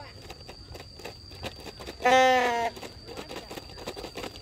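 A man's drawn-out shout across the pitch, one call held for under a second about two seconds in, with a steady high whine underneath.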